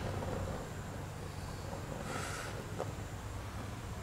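Quiet outdoor background: a steady low hum under a faint even hiss, with a brief soft rustle about two seconds in. The lit propane heater itself makes no clear sound of its own.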